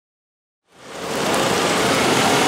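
Silence at first, then outdoor ambience fades in about two-thirds of a second in: a steady hiss of street noise with the low hum of an idling city bus engine.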